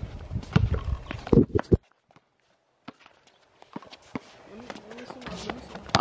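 Basketballs bouncing on an outdoor hard court: several sharp thuds in the first couple of seconds, then near silence, then a few faint knocks near the end.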